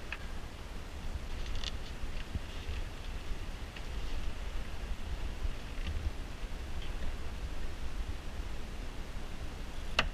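Faint rustling and a few small clicks of hands handling wiring and a battery terminal connection, over a steady low rumble.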